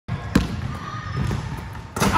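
Basketball bouncing on a hardwood gym floor: one sharp bounce about a third of a second in, followed by softer thuds.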